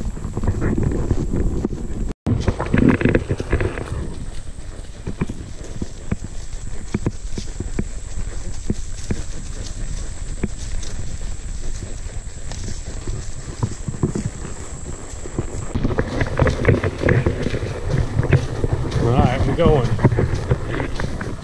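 A saddle mule walking under a rider through tall grass: a run of hoof falls and knocks over the steady brush of grass.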